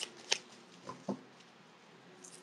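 Cards being shuffled and handled, a few short, faint clicks and rustles in the first second or so.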